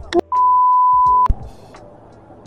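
A single steady electronic beep: one pure, even tone lasting about a second.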